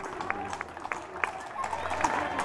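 Shod horse hooves clopping on an asphalt street, about three even clops a second, stopping about a second and a half in, over crowd chatter.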